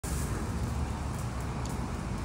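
A steady low rumble of motor-vehicle noise with a light hiss over it.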